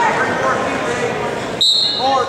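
Crowd murmur in a large gym, then about one and a half seconds in a referee's whistle gives one short, steady, high blast, the signal to restart the wrestling bout.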